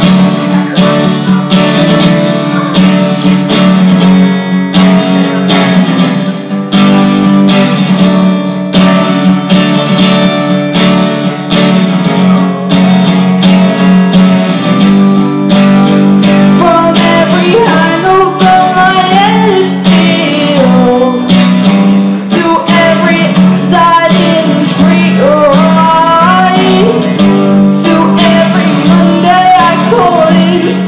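Acoustic guitar strummed in a steady rhythm, with a woman's voice singing over it, coming in more strongly about halfway through.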